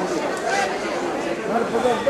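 Several people talking at once: indistinct overlapping chatter of voices.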